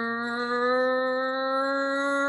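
A woman's voice holding one long, steady "rrrr", the sound of the letter R made to imitate a race car engine. Its pitch creeps slightly upward.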